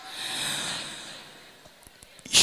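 A Quran reciter's deep breath, heard close on a handheld microphone between phrases of the recitation. It swells to its loudest about half a second in and fades away.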